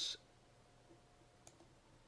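A single computer mouse click about one and a half seconds in, over quiet room tone with a faint steady tone.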